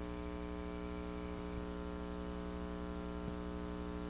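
Steady electrical mains hum: a constant low buzz with many overtones and a faint hiss, unchanging throughout.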